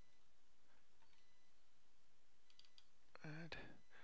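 Faint, scattered computer keyboard keystrokes over a low steady hiss, with a short murmured voice sound near the end.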